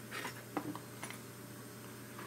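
Faint clicks and light taps as an airbrush and its air hose are handled and set down on a workbench, over a steady low hum.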